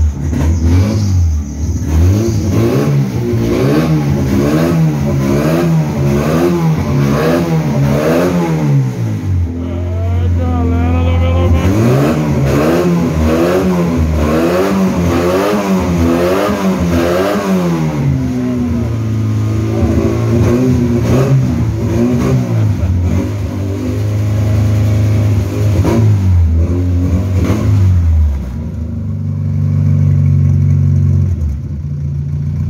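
Turbo buggy engine revved hard in quick repeated blips, its pitch rising and falling a little more than once a second, in two long runs. It then settles to a steady idle with only small blips in the last part.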